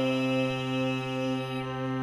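Hand-pumped harmonium holding a steady drone chord on its own, with no voice over it.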